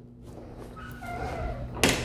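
An interior pantry door being swung shut: a faint short squeak, then the door shuts with a knock near the end.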